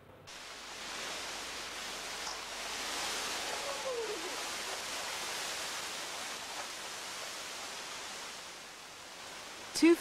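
Rainforest ambience: a steady rushing hiss that swells slightly around the middle and eases off near the end, with a faint falling call about four seconds in.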